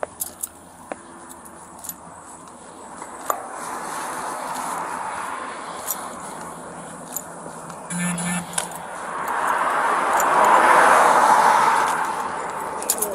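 Road traffic passing: tyre and engine noise from vehicles on the road swells gradually and is loudest near the end as a vehicle drives by close. Light clicks and jingles scattered through it.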